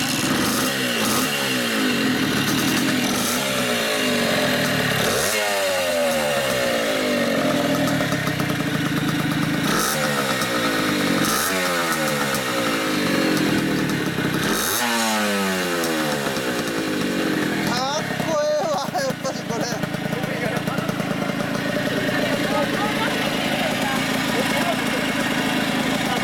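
Kawasaki KS-2's small two-stroke single-cylinder engine, running through three expansion-chamber exhausts, being revved: a handful of sharp throttle blips, each rising and falling back, with the strongest about five, ten, eleven and fifteen seconds in. It then settles to a steady two-stroke idle over the last few seconds.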